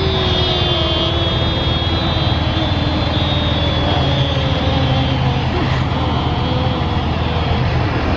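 Motor vehicle engine running, a steady low rumble with a hum that slowly falls in pitch.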